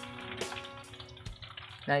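Plantain slices frying in hot oil in a wok, with scattered sharp crackles, under faint steady music notes that fade away.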